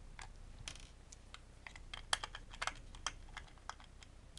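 About a dozen small, irregular clicks and ticks as a small screwdriver works triangular tamper-proof screws out of a plastic plug-in night light case.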